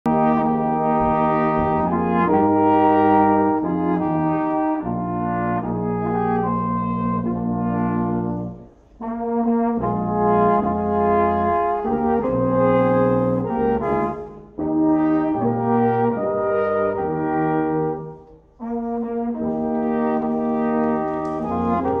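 Small Austrian folk brass ensemble (two high horns, a baritone horn and a tuba) playing a slow tune in held chords. There are brief breath pauses between phrases about every four to five seconds.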